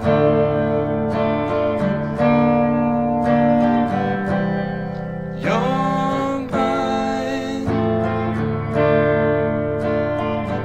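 Les Paul Custom electric guitar played through the verse's chord progression of F, D minor, G minor and C, the chords changing every second or two, with a voice singing along.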